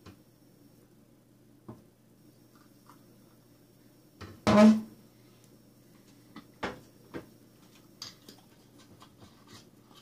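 A few light, separate clicks and knocks of a glass jug and drinking glass being handled, over a steady low electrical hum in a small quiet room; the hum is otherwise the main sound.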